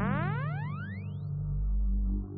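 Electronic music: a cluster of synthesizer tones glides rapidly upward over a sustained low drone, and a deep bass note swells in near the end.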